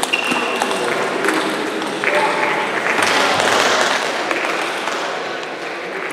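Table tennis rally: the celluloid ball clicks sharply off the bats and the table, a few hits about a second apart, over a steady murmur of voices in the hall. A louder rushing noise swells about three seconds in.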